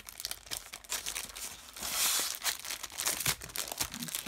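A clear plastic packaging sleeve crinkling as sheets of glitter paper are handled and slid against it, in a run of crackling rustles with a louder stretch about halfway through.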